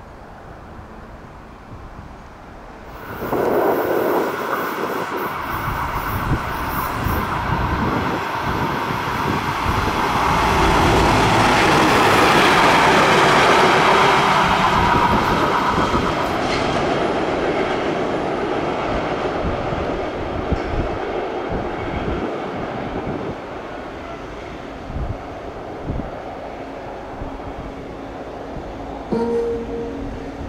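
A freight train hauled by an ÖBB class 2070 diesel locomotive passing close by, its wheels running on the rails. It comes in suddenly about three seconds in, is loudest in the middle, and slowly fades away.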